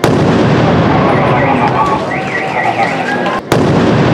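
A pressure cooker bomb detonated by an army disposal team: a sudden loud blast, followed by dense, sustained noise. From about a second in, a car alarm wails over it, set off by the blast. The noise breaks off briefly and starts again suddenly about three and a half seconds in.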